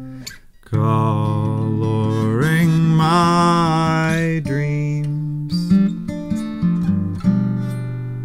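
Acoustic guitar accompanying a man singing a long, wavering vocal line that starts about a second in, with no clear words. From about halfway on the voice drops out and the guitar plays on alone, single notes picked and left ringing.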